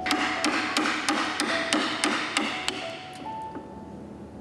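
A wood chisel being struck over and over as it cuts into a block of wood, about three sharp blows a second, stopping about three seconds in. Background music with held tones runs underneath.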